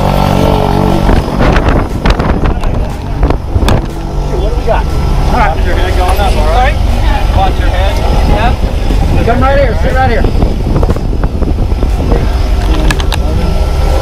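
Propeller engine of a skydiving jump plane running steadily with a loud drone. Voices call out over it in the middle.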